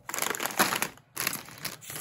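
Plastic snack bag of pretzel sticks crinkling as it is handled and set down on the table, in two spells with a short pause about a second in.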